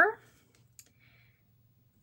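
After a spoken word trails off, near silence with one faint sharp click and a soft, brief rustle as washi tape is handled over a paper planner page.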